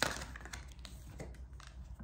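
Tarot cards being handled on a table: a sharp click as a card is set down, then soft rustling and a few light taps of cards.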